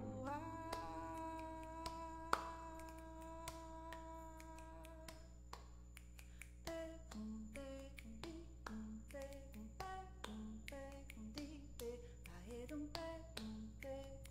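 A held chord on a Roland electric keyboard fades out over the first five seconds. Then finger snaps begin in a steady rhythm, with short hummed vocal notes between them.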